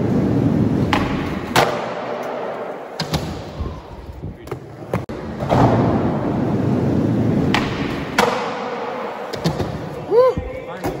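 Skateboard wheels rolling across a skatepark floor in two long runs, with several sharp clacks and thuds of the board hitting the ground, the loudest about a second and a half in.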